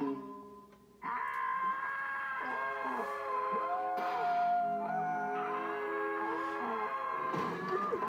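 Animated-film soundtrack heard from a TV in the room: a held, ringing harp chord, then about a second in several cartoon voices break into long, overlapping screams that swoop up and down in pitch.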